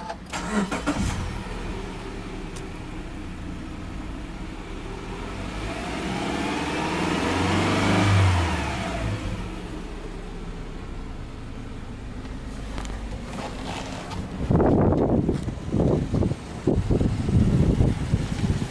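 Subaru Legacy 2.5i's EJ25 flat-four engine starting about half a second in and settling to idle, heard from inside the cabin. Around the middle it is revved once in neutral, the pitch rising slowly to a peak and falling back to idle. For the last few seconds loud irregular handling noise and knocks cover the idle.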